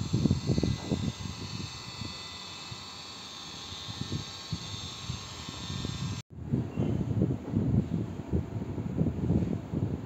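A small electric AC vacuum pump running steadily, a hum with fine high tones, under irregular low rumbling. About six seconds in the pump sound cuts off abruptly, leaving only the irregular low rumble.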